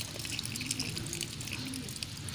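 A thin stream of water poured from above, splashing onto dry leaves and soil while a seedling is watered.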